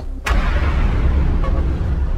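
A sudden deep boom about a quarter second in, followed by a loud rushing noise over a heavy low rumble: a trailer's sound-design impact hit.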